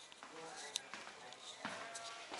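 Faint, distant voices in a room with footsteps on a hard floor and a sharp tap about three-quarters of a second in.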